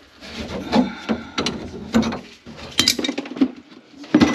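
Hard kitchen items, dishes and utensils, clattering and clinking as they are handled and set down around the sink: a string of irregular knocks, some with a short bright ring.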